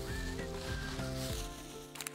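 Plastic grocery bags rustling and crinkling as they are handled to stuff a shirt, fading near the end, over soft background music.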